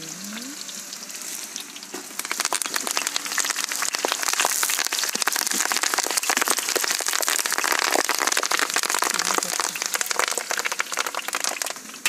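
Hot oil sizzling and crackling in a black iron kadai over a wood fire, turning much louder and busier about two seconds in as fresh green leaves go into the oil.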